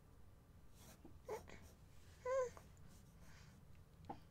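A baby babbling: a short vocal sound about a second in, then a louder, wavering one just after two seconds.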